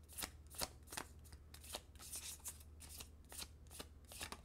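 A tarot deck being shuffled by hand: a faint, quick run of card slaps, about three a second.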